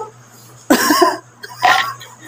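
A person coughing: two short bursts, the second one about a second after the first.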